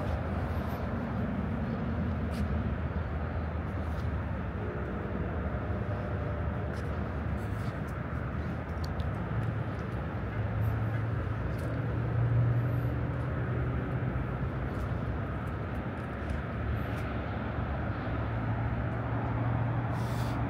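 Steady outdoor background of distant road traffic. A low engine hum strengthens about halfway through.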